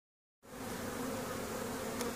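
A large honeybee swarm clustered in a cardboard box, buzzing in a steady low hum that begins about half a second in.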